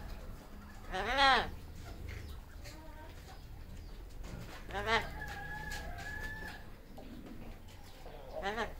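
Amazon parrot calling: a loud, arching rise-and-fall call about a second in, then a second call about five seconds in that settles into a steady held note for about a second and a half.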